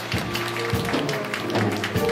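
A live band playing soft background music: held bass and mid-range notes over a light beat.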